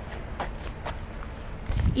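Footsteps on an icy road, a few light steps about half a second apart, over a low rumble of wind on the microphone.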